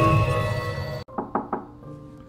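Jingle music with held tones fades and cuts off abruptly about a second in. Three quick knocks follow, about a fifth of a second apart, over faint soft music.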